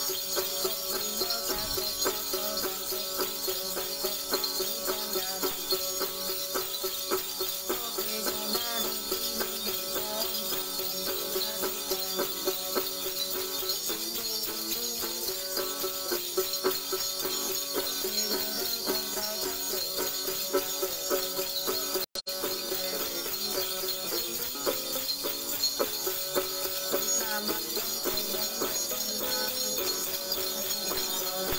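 Đàn tính, the Tày long-necked gourd lute, strummed continuously with a steady jingling of small bells (Then xóc nhạc) shaken in time. The sound cuts out for a moment about two-thirds of the way through.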